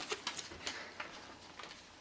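Faint handling clicks and light rustle as a plastic street-light photocontrol housing is picked up by hand, fading toward the end.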